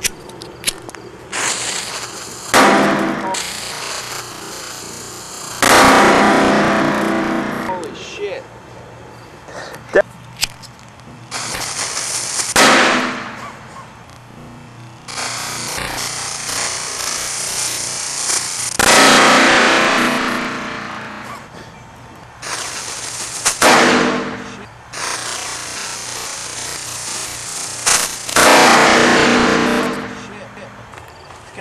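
Small ground firework going off in a string of about eight sudden, loud hissing bursts, each fading away over a second or two, with a few sharp pops in between.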